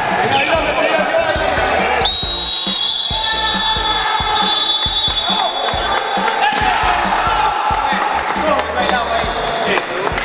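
A basketball bouncing on a wooden gym floor, with players' voices around it. About two seconds in, a referee's whistle blows a sharp blast, which then trails on more faintly for a few seconds.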